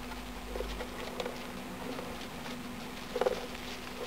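Young fancy mice scurrying and rustling in wood-shavings bedding, with light scratchy patter and a soft knock about three seconds in, over a steady low hum.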